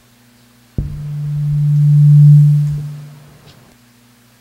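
A low, steady, pure hum that starts with a click about a second in, swells until it is loud, then fades away before the end.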